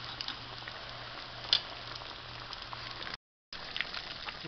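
Breaded ground-beef patties frying in shallow oil in a pan: steady sizzling with scattered pops, one louder pop about halfway, over a low steady hum. The sound cuts out for a moment near the end.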